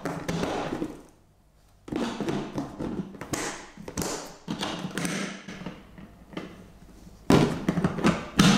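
Large hard-plastic food storage container being handled as its lid is fitted and pressed down: a run of plastic taps, clicks and rattles, then one loud knock about seven seconds in.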